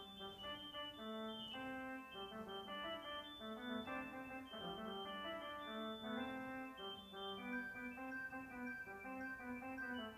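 Electronic church organ playing a French Baroque noël on its reed stops, a brassy, reedy tone. Quick moving melodic lines run over sustained lower notes.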